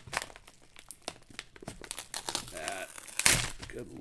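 Crinkling and rustling of a padded kraft mailer envelope being handled and lifted out of a cardboard box, a run of small crackles with one loud rustle a little past three seconds in.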